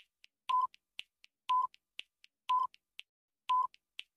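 Quiz countdown timer sound effect: four short, identical electronic beeps, one a second, with faint ticks between them.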